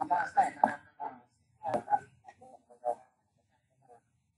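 A person's voice speaking in short phrases, the words not made out, falling silent about three seconds in.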